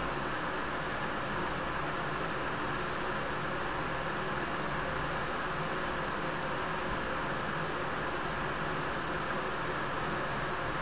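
Steady, even hiss of background noise at a constant level; the draw on the e-cigarette and the exhaled cloud of vapour make no sound that stands out from it.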